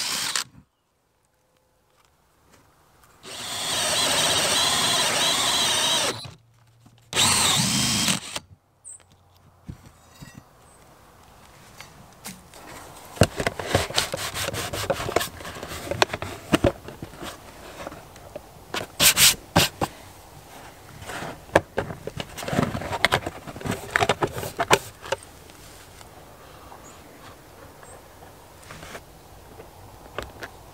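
Cordless drill driving a 4-inch hole saw through wall siding, in a steady cut of about three seconds and then a shorter second burst. After that come scattered knocks and taps as a plastic wall vent hood is pushed into the hole.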